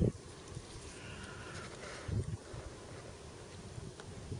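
Faint buzz of a flying insect over quiet field ambience, with one soft low thump about two seconds in.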